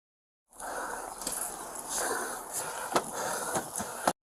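Body-worn camera picking up an officer's own movement: rustling and scraping with a few sharp clicks over street noise, starting about half a second in. The loudest click comes about three seconds in.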